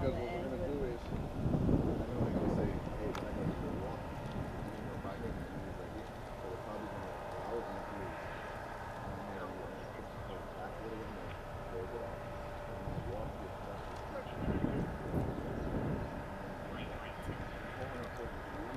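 Indistinct police radio dispatch voices in short spells, about a second in and again near the end, over a steady background of outdoor traffic noise.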